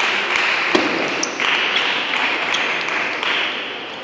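Table tennis ball tapping a few times at irregular intervals between points, over a steady wash of noise that slowly fades.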